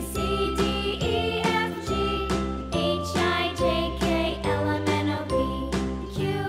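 Cheerful children's background music with a steady beat, a bass line and a bright, jingly melody.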